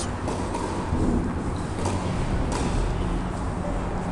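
Tennis ball being struck and bouncing during a rally on an indoor clay court: a few sharp knocks, two of them close together a little after halfway, over a steady low hum.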